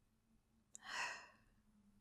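A woman's soft sigh: one breathy exhale about a second in, just after a short click.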